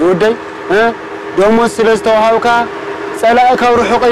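A man's voice calling out loudly in Tigrinya, in long drawn-out phrases that rise and fall in pitch, in three stretches.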